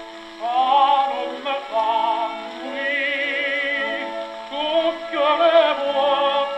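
A 1926 Victor 78 rpm record played on an HMV 163 gramophone: a tenor voice with vibrato over a sustained orchestral accompaniment, getting louder about half a second in. It has the narrow, muffled sound of an old record.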